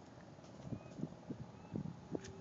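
Faint, irregular light knocks, about five within a second or so.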